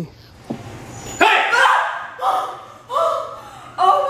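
A dog barking four times, about once a second.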